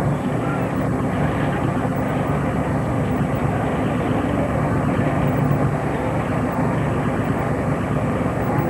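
A steady engine rumble with a faint murmur of voices over it.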